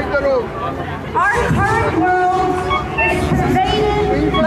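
A young woman's voice reciting aloud from a written text, drawn out on a few long held notes in the middle, with crowd babble behind.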